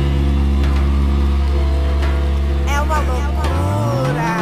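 Music from a house dance mix: a long held deep bass note under steady chord tones, a short sung or sampled vocal phrase about two-thirds through, and a tone rising in pitch near the end.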